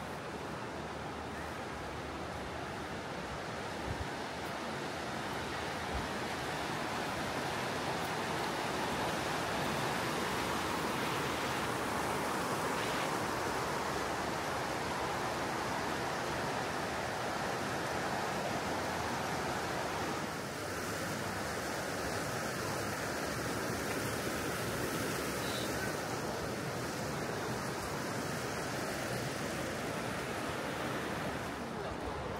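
Steady rushing of the Teplá river's water flowing over a low weir in its stone channel, a little louder in the middle stretch.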